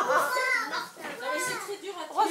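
Young children's voices talking and calling out, high-pitched, with a short pause about a second in.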